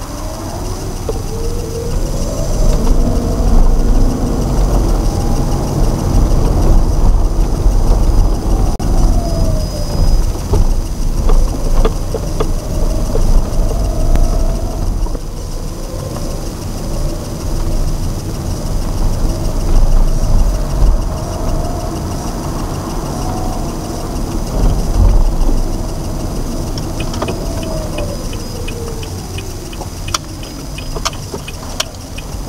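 Car engine and road noise heard inside the cabin: a low rumble with a whine that rises in pitch as the car pulls away, holds while it cruises, and falls as it slows near the end. A regular ticking starts near the end, as the turn signal is on for a turn.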